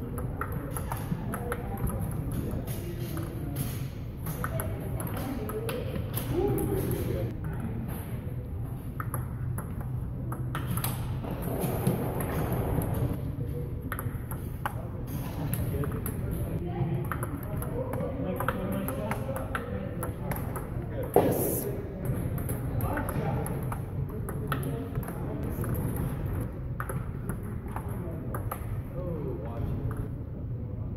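Table tennis ball being hit back and forth in rallies: quick, sharp clicks of the celluloid/plastic ball off rubber paddles and the table, with one louder, sharper hit about two-thirds of the way through. Indistinct voices are heard at times.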